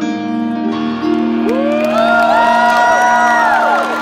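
A guitar chord rings out at the end of a live song. About a second and a half in, the crowd starts whooping and cheering, with many rising and falling shouts over the fading chord.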